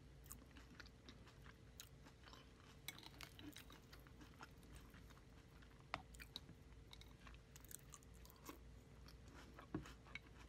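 Faint, close-miked chewing of crunchy Fruity Pebbles cereal in milk: an irregular scatter of small crunches and clicks, with a sharper click about six seconds in and a couple more near the end.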